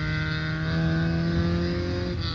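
A motor vehicle driving past, its engine a steady hum that rises slightly in pitch.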